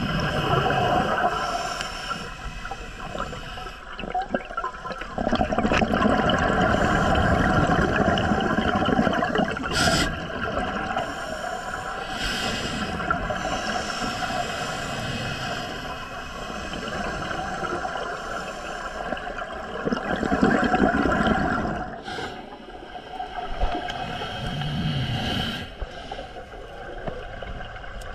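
Scuba divers breathing through their regulators underwater: exhaled bubbles rush and gurgle in swells a few seconds long, with short lulls between breaths.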